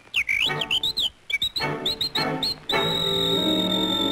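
Cartoon soundtrack of whistled bird chirps: a run of short rising and falling whistles, then one long held high whistle note from about two-thirds of the way in, over a light orchestral accompaniment.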